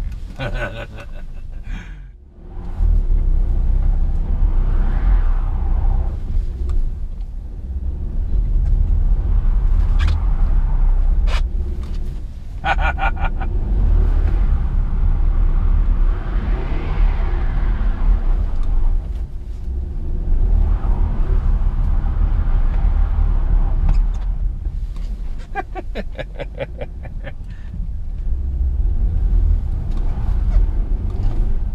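Inside a rear-wheel-drive Mercedes sedan on snow and ice with ESP off: steady low engine and road rumble, with the engine revving up and falling back a couple of times as the car is pushed into slides.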